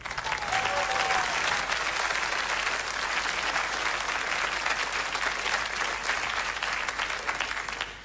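Studio audience applauding steadily, dying away near the end.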